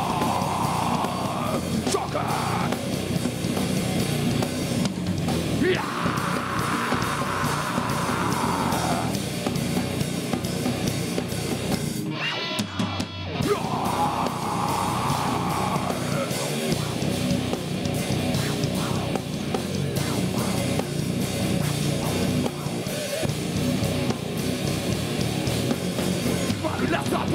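Live nu-metal band playing: heavy distorted guitars, bass guitar and drum kit, with a short break about twelve seconds in.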